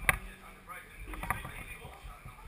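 A sharp knock just after the start and two more close together a little past one second, over faint distant voices.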